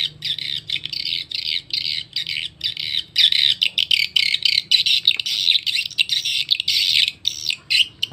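Recorded edible-nest swiftlet calls played through a swiftlet-house tweeter: a fast, unbroken run of short, high chirps. This is the 'tarik' (lure) track on the amplifier's right channel, used to draw swiftlets into a bird house.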